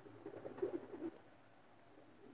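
A racing pigeon cooing faintly, a low warbling coo lasting about a second.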